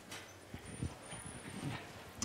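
A few soft, irregular knocks and shuffling from a person moving about in a seat, over faint room noise.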